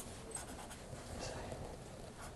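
Faint scratching of a hand writing, low behind the room's hum.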